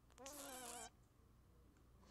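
A cat meowing once, a short call of well under a second.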